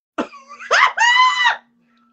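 A short cough-like burst, then one high-pitched vocal squeal lasting under a second that rises, holds and drops off at the end.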